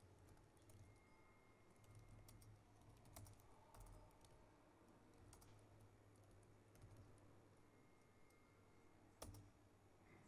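Faint typing on a laptop keyboard: scattered, irregular keystrokes, with one sharper click near the end.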